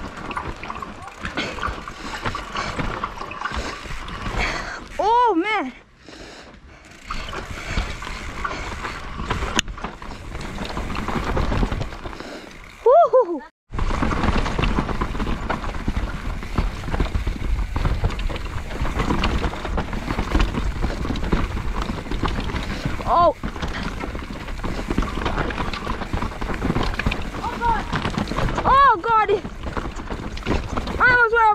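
2019 YT Capra mountain bike riding down a steep dirt and root trail, heard from its handlebar camera: steady tyre and rattling noise. A few short pitched sounds that fall in pitch break through, the loudest about thirteen seconds in.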